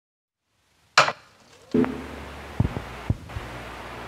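A sharp crack about a second in, then a few dull knocks over a low hum.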